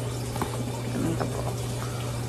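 Steady hiss with a low hum underneath, and a few faint clicks as a packaged flatware set is handled.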